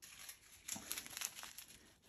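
Small plastic zip-lock bags of diamond-painting drills crinkling faintly as a hand picks through a pile of them, with a few sharper rustles about a second in.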